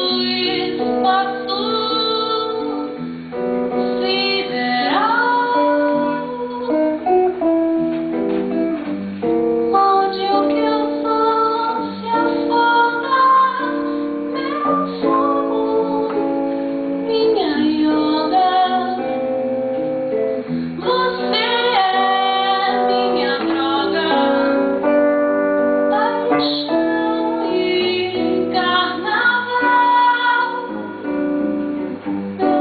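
A woman singing a slow bossa nova with acoustic guitar accompaniment, performed live; her held notes and pitch glides sit over plucked, picked guitar chords.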